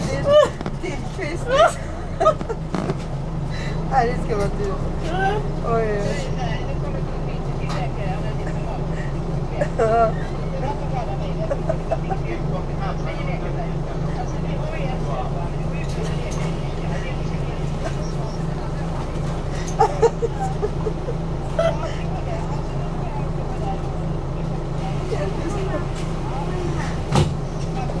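City bus engine idling with a steady low hum, heard from inside the passenger cabin while the bus stands still, with faint voices and a few brief knocks over it.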